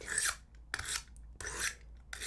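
A small craft knife blade stroked across a sharpening stone, three short scrapes about 0.7 s apart as the blade is sharpened.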